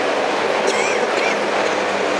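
Steady street traffic noise, an even rushing sound without breaks, loud enough to cover the table.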